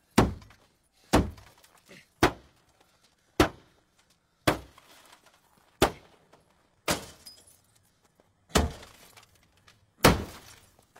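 A metal rod smashing into a car's body and windows: eight heavy blows about a second apart, each with a crunch of breaking glass and a short ring of struck metal.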